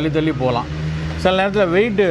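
A man speaking, with a short pause a little over half a second in, over a steady low hum.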